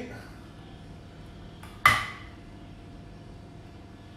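Quiet, then one sharp metallic clack about two seconds in, with a fainter tick just before it: a kitchen knife being put down on a hard kitchen surface.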